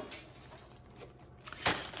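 Quiet room tone, then about a second and a half in a short burst of rustling and knocking as items are handled and picked up.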